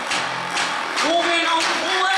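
Live band music: a steady drum beat under string and guitar sound, with a singing voice coming in with gliding notes about a second in.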